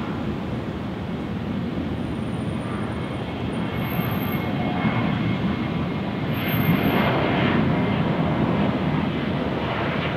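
Boeing 737 airliner's twin jet engines at takeoff thrust during the takeoff roll: a steady rumble that swells louder about six and a half seconds in as the jet passes.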